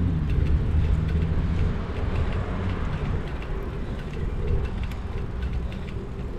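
Wind rumble on the microphone and tyre noise of a bicycle rolling along tarmac, steady and unbroken, with scattered faint light clicks.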